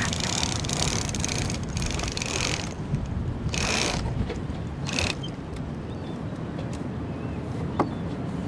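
Rope halyard rasping through pulley blocks as a gaff mainsail is hauled up by hand: one long pull followed by two short ones, then a pause, with one sharp tick near the end. A steady low rumble of wind on the microphone runs underneath.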